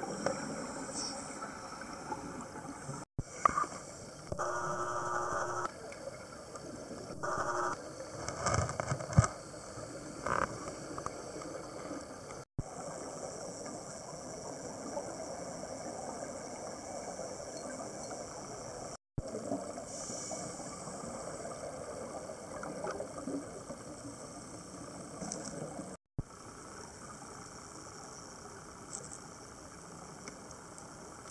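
Underwater sound picked up by a diver's camera: scuba breathing, with a humming regulator on two inhales and loud bursts of exhaled bubbles, over a steady underwater hiss. The sound drops out briefly four times at edit cuts.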